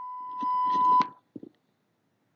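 A steady electronic beep, one high tone, getting louder before it cuts off suddenly about a second in. It marks the end of a recorded dialogue segment, the cue for the interpreter to begin.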